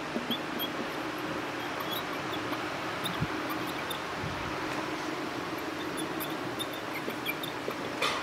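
Dry-erase marker squeaking on a whiteboard in short, high chirps as words are written, over steady room noise.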